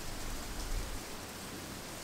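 Steady outdoor background noise: an even hiss, with a low rumble of breeze on the microphone.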